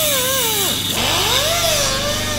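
Corded high-speed rotary tool with a cut-off disc cutting into a Nissan GT-R's metal body panel. Its motor whine sags and recovers in pitch twice as the disc is pressed into the metal, over a steady grinding hiss.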